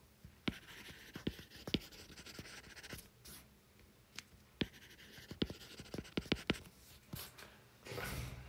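Stylus tip tapping and sliding on an iPad's glass screen during handwriting: a run of irregular, sharp little taps with faint scratching between them.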